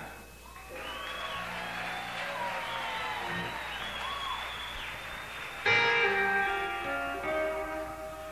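A live audience cheering, then about six seconds in an electric guitar comes in suddenly and loudly with ringing, sustained chords.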